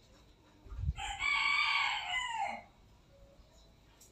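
A rooster crowing once in the background: one long call of nearly two seconds that drops in pitch at its end, just after a short low thump.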